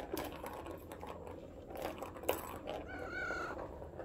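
A cat batting at a plastic ball-in-track toy: irregular clicks and rattles of the ball and plastic under its paws. About three seconds in, the cat gives a short, high-pitched chirp.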